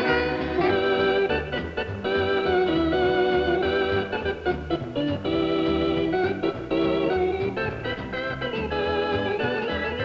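Organ playing melody and held chords in a swing dance-band arrangement, with the band's rhythm section underneath.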